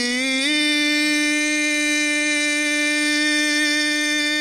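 A male munshid's solo voice singing an ibtihal, a devotional Islamic chant: a short wavering melismatic turn, then, about half a second in, a rise onto one long held note that stays steady.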